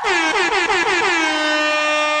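DJ-style air horn sound effect: a quick run of about six short blasts, each dipping slightly in pitch, then one long held blast.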